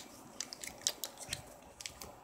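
Foil booster-card packs being handled and set down on a cloth: a scatter of light, crisp crinkles and ticks.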